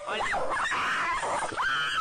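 A small dog yapping aggressively: a string of short, high-pitched yaps with a rougher, snarling stretch in the middle.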